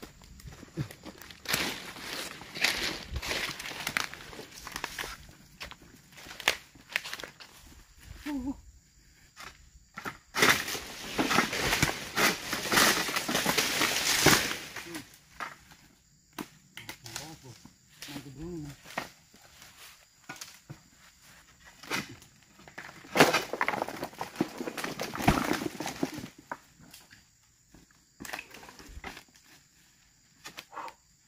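Dry fallen oil palm fronds and undergrowth crackling and rustling under footsteps and handling. The rustling is loudest in two longer stretches, about ten seconds in and again near twenty-three seconds.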